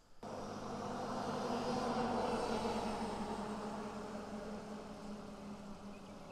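An engine passing by: a steady droning hum that starts abruptly, swells to its loudest about two to three seconds in, then slowly fades.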